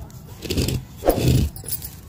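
Dry, papery tuberose bulbs and their dried roots rustling as they are handled and pressed into a clay pot, in two short bursts, the second louder.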